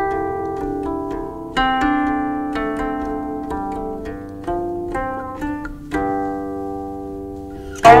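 Guqin, the seven-string Chinese zither, played solo: a slow melody of single plucked notes, each ringing and fading before the next. The loudest note is struck just before the end.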